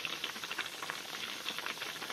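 Food sizzling and bubbling in a cooking pan: a steady, dense crackle.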